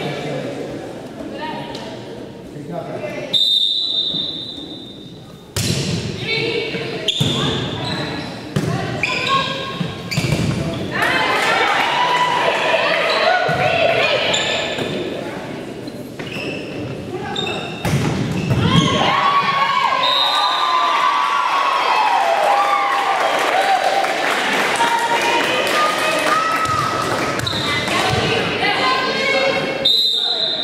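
A volleyball rally in an echoing gym: a referee's whistle blows shortly before the serve, then the ball is struck several times with sharp thumps. From about ten seconds in, players and spectators shout and cheer for a long stretch, and the whistle blows again near the end.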